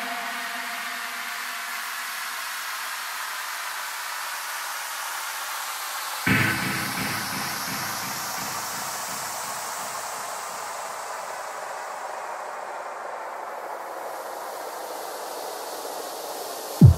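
Synthesized white-noise sweep in a techno mix breakdown, with no beat: a steady hiss, a sudden hit about six seconds in that adds a low boom, then the noise slowly dies away.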